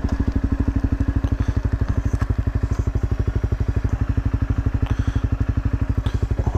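Dual-sport motorcycle engine idling steadily, an even rapid thumping of about a dozen pulses a second.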